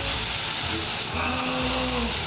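Mylar foil inflatable discs crinkling and rustling as they are handled, with air hissing as they are blown up through straws.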